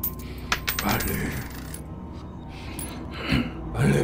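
Coins clinking, with a few sharp clinks in the first second, over a low steady drone. A louder swell rises near the end.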